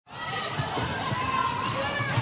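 A basketball being dribbled on a hardwood court, several bounces in the first second or so, with the hum of a large indoor arena under it.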